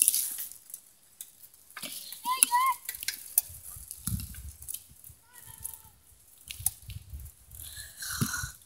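Low wind rumble on a phone microphone and handling clicks while riding, with a brief high-pitched warbling sound about two seconds in.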